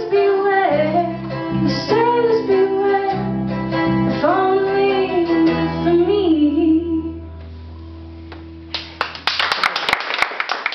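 A woman sings the last lines of a song over acoustic guitar, and the final chord rings out and fades. Audience applause breaks out about nine seconds in.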